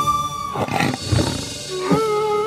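Background score of a TV serial: a held flute-like note ends about half a second in, a short roar-like noisy swell rises and fades, and a new wavering held note begins near the end.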